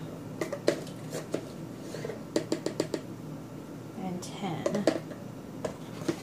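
Plastic measuring spoon clicking and tapping against a plastic cornstarch container while cornstarch is scooped out and shaken onto dough, with a quick run of about six taps in the middle. A short bit of voice comes about four seconds in.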